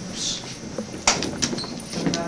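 Sharp clicks and knocks from a small wheeled robot being handled on a concrete floor: one loud click about a second in, then two softer ones.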